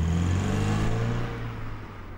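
A car pulling away and driving off: engine hum and tyre noise, its note rising a little before fading as the car moves off.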